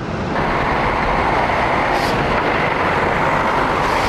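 Busy city road traffic: a steady, loud noise of cars and buses running past, starting a moment in.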